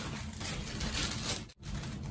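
Rustling and crinkling of a small plastic zip bag being handled and opened by hand. The sound drops out abruptly for an instant about one and a half seconds in.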